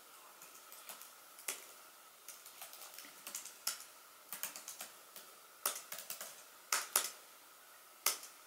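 Typing on a laptop keyboard: uneven runs of soft key clicks with a few sharper, louder key strikes scattered through, the loudest pair near the end.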